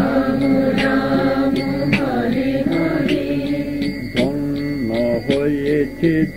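Kirtan: voices chanting a devotional mantra in long, held sung notes.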